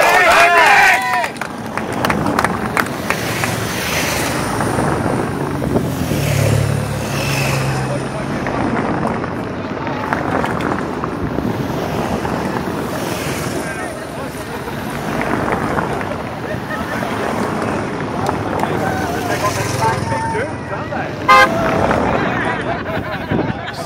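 Race vehicles passing close by on a cobbled road: a motorbike and a team car going by, with spectators shouting. A vehicle horn toots briefly near the end.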